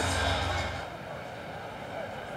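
Quiet ballpark background noise with no distinct event; a low hum fades out within the first second.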